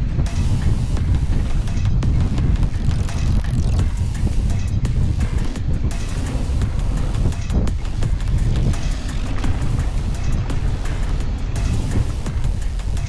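Wind buffeting the action camera's microphone over the rattle and rolling tyre noise of a Commencal Clash mountain bike descending a dry dirt and gravel trail at speed, with many small clicks and knocks from the bike over the bumps.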